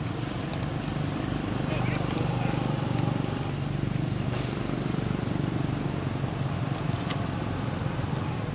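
Outdoor background of a motor engine humming steadily as motorbike traffic passes, a little louder a couple of seconds in, with indistinct voices under it.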